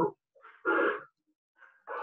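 A dog barks once, short and sharp, about half a second in, heard over a video-call connection.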